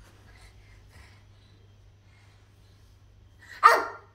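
A toddler gives one short, loud yelp near the end, after a few seconds of faint shuffling and breathing.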